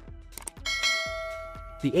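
A couple of soft clicks, then a bell chime that rings out and fades over about a second: the click-and-ding sound effect of a subscribe-button animation.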